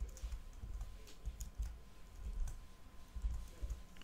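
Typing on a computer keyboard: a run of several irregular keystrokes.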